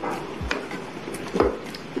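A wooden spatula stirring thick coconut-milk curry in a nonstick pan, with two sharp knocks of the spatula against the pan about half a second and a second and a half in.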